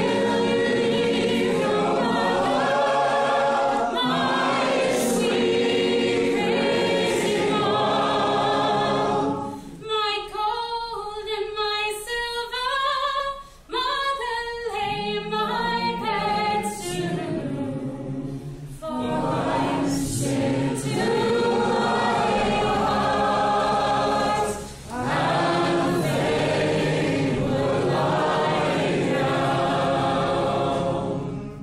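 Unaccompanied group singing: a roomful of voices singing a chorus together. About a third of the way in it thins to a single woman's voice for a few seconds, then the group comes back in, with short breaks between lines.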